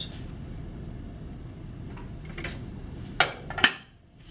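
Two sharp clacks about half a second apart, near the end, as stacked sediment sieves are handled and knocked together on a lab bench, over a low steady background hum.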